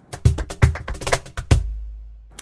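Short percussive music sting: a rapid run of sharp drum and wood-block hits over about a second and a half, ending on a deep boom that fades away.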